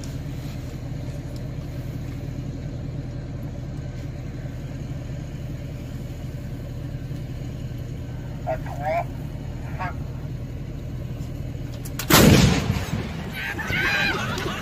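A towed artillery howitzer firing once near the end: a sudden, very loud blast that rings on briefly. Before it there is a steady low engine hum and a couple of short distant shouts.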